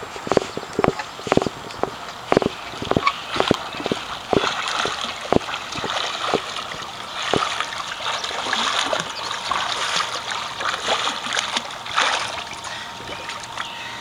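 A swimmer's arm strokes and kicks splashing in a pool: a run of sharp slaps close together for the first several seconds, then a steadier wash of splashing.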